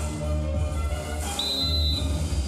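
Arena music with a heavy bass line. About one and a half seconds in, a referee's whistle blows one steady high note, signalling the start of the bout.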